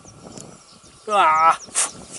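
A man's short wordless exclamation about a second in, a single drawn-out voiced sound sliding slightly down in pitch, followed by a brief breathy hiss.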